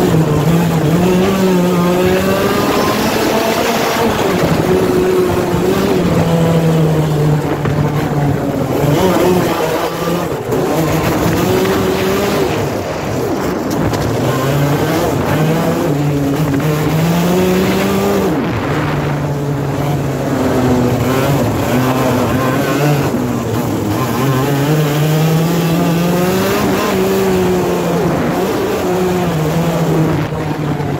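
IAME kart's single-cylinder two-stroke engine running hard on track, its pitch climbing on the straights and dropping back under braking several times, heard onboard over wind and tyre noise.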